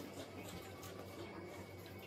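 Faint, irregular small clicks and taps of eating at a table: a spoon against a plate. A low steady hum runs underneath.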